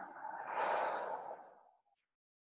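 A person's long audible exhale, a deep breath let out like a sigh, fading away after about a second and a half.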